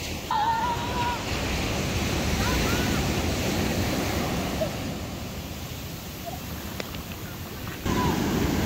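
Sea surf breaking and washing up a sandy beach: a steady rush of water that is louder in the first half, eases off, then swells again near the end.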